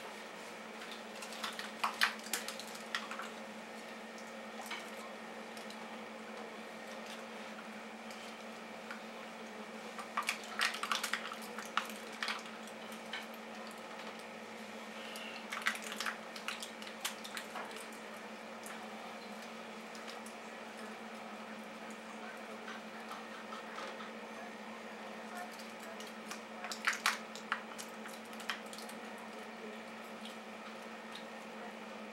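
Steady low hum of running aquarium equipment, broken by a few short clusters of watery splashes and clicks: near the start, twice around the middle, and near the end.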